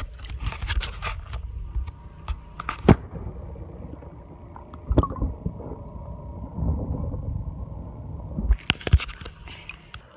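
Water sloshing and splashing around a phone as it is dipped into the water, then a muffled underwater rumble and gurgle with the microphone submerged. A few sharp knocks follow near the end as it comes back out.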